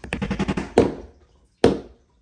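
Clatter and sharp knocks of a hammer and small wooden kit pieces on a wooden tabletop: a quick run of rattling taps, then two loud knocks about a second apart.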